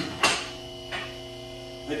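Electric hydraulic pump of a portable scissor car lift running with a steady hum while the lift raises the car, with three sharp clicks, two close together at the start and one about a second in.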